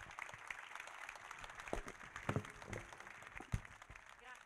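Audience applauding: a fairly faint, dense patter of many hands clapping, with a few louder single claps standing out.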